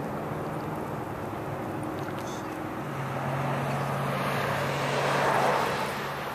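A car passing on the adjacent road, its tyre and engine noise swelling to a peak near the end and then fading, over a steady hum of road traffic.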